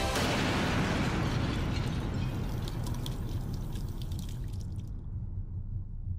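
Small homemade rocket motor firing horizontally, its smoke jet giving a loud rushing hiss that starts suddenly and slowly dies away. Sharp crackling sounds through the middle of the burn and stops abruptly about five seconds in, leaving a fading low rumble.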